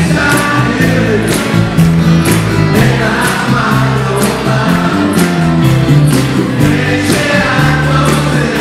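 A live band playing a song: acoustic and electric guitars over a steady bass line and beat, with several voices singing together into the microphones.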